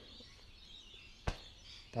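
Faint birdsong in the background, with a single sharp click a little over a second in.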